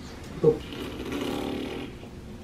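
Soft wordless vocal sounds: a short, loud one falling in pitch about half a second in, then a longer, breathier one lasting about a second.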